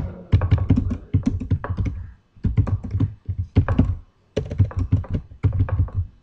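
Typing on a computer keyboard: quick runs of key clicks with a dull thud to each stroke, broken by a few short pauses.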